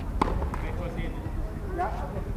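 A tennis ball bouncing on a hard court: two sharp knocks within the first half second, over a steady low rumble and faint voices.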